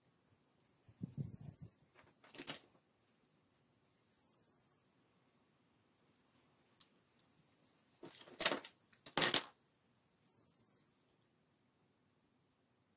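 Plastic clicks and knocks of cylindrical battery cells being handled and pressed into a battery pack's plastic cell holder. There is a low rattle about a second in, a sharp click at two and a half seconds, and the loudest pair of clicks between eight and nine and a half seconds in.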